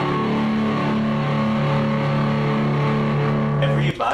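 Electric guitars holding a sustained chord that cuts off abruptly near the end, with a short hiss of TV-static noise just before the cut.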